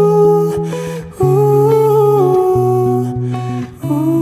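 Music: a male voice singing long, wordless 'ooh' phrases over plucked acoustic guitar, with two short breaths between phrases.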